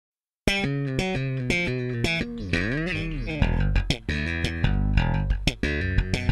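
Rock song intro: a plucked bass and guitar riff of short picked notes starts just after the beginning, with one note sliding up and back down a little before halfway, and the sound fills out with more of the band a little past halfway.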